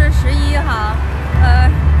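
A woman's voice speaking over a steady low rumble of road traffic.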